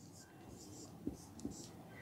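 Faint marker pen scratching on a whiteboard in short strokes as letters are written, with a couple of light ticks in the second half.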